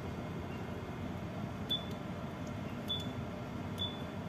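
Three short clicks, each with a brief high beep, from the Furuno ECDIS console as its controls are clicked, over a steady background hum.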